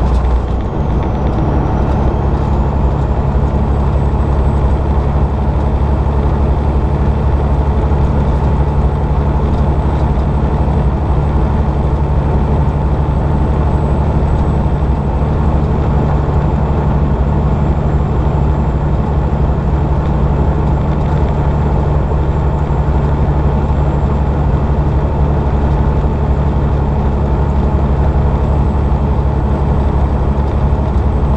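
Semi truck's diesel engine running steadily at highway speed, heard inside the cab as a loud, even drone mixed with road noise. The engine note shifts briefly right at the start, then holds steady.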